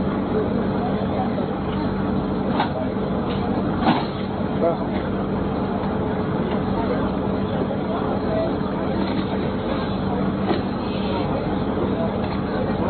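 Steady engine hum of an idling large vehicle, under the talk of a crowd, with two sharp clicks a few seconds in.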